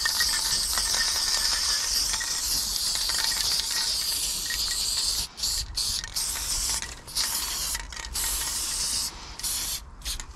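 Aerosol spray-paint can hissing as paint is sprayed, a long continuous spray for the first five seconds, then a series of short spurts with brief breaks.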